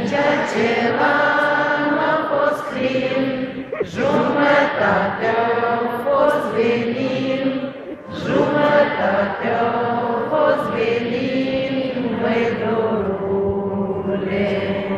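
A large concert-hall audience singing a song together with the performer, unaccompanied and unamplified because the electricity has cut out. The notes are long and held, with short breaks between phrases about four and eight seconds in.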